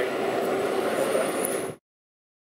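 Steady motor-vehicle rumble with no distinct events, cutting off abruptly to silence just before the end.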